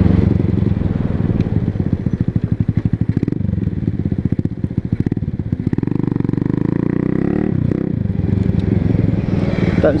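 125cc motorcycle engine running while being ridden, its exhaust beat a fast steady pulse, with the engine note shifting about two-thirds of the way through as the revs change.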